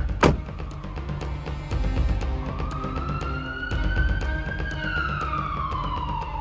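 Ambulance siren wailing in one slow rise that begins to fall near the end, over a low engine rumble and background music. A sharp knock sounds just after the start.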